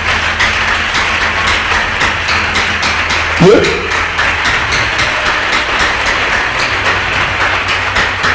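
A congregation applauding steadily, with one brief voice call about three and a half seconds in.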